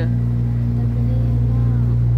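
A small motorboat's engine runs at a steady speed with an unchanging low hum while the boat moves along the river.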